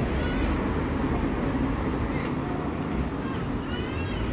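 A few short, high-pitched arching calls, once near the start and again near the end, over a steady low rumble of street noise.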